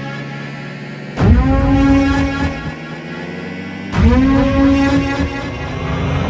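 Deep, brassy cinematic soundtrack hits, one about a second in and another about four seconds in. Each swells in suddenly, slides up in pitch, then holds and fades.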